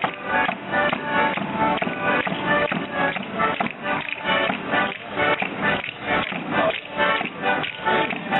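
Live Italian folk dance music led by an accordion, with a steady beat.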